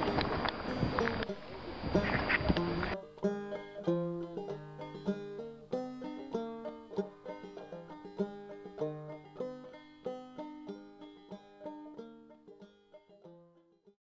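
Banjo music, quick plucked notes, fading out near the end. For about the first three seconds a rushing noise lies over it, then the banjo is heard alone.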